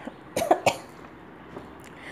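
A person coughing in two quick bursts about half a second in, then low room noise.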